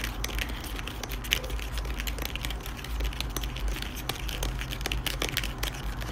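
Light, irregular clicking and crinkling of a Popin' Cookin' candy kit being handled: the small plastic tray, spoon and powder packets knocking and rustling, over a steady low hum.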